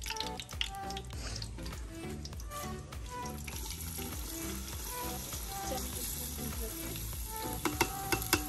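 Oil with whole spices and bay leaves sizzling in a metal cooking pot, the sizzle growing as chopped onions are tipped in. A few sharp taps come near the end.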